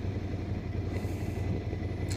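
Ducati Scrambler's air-cooled L-twin idling steadily, a low even hum while the bike waits at a stop.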